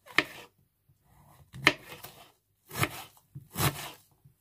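A kitchen knife slicing mushrooms and chopping an onion on a wooden chopping board: four separate cuts, roughly a second apart, each ending in a sharp knock of the blade on the board.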